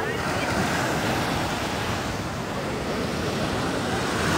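Pacific Ocean surf breaking and washing up the shore, a steady rush of waves, with wind buffeting the microphone.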